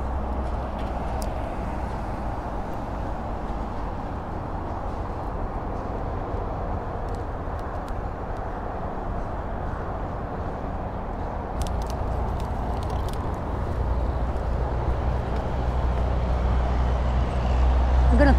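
Steady rumble of road traffic on the highway overpass overhead, swelling louder over the last few seconds. A few light clicks come about twelve seconds in.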